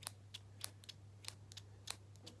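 Scissors snipping: a quick, irregular string of about eight sharp snips.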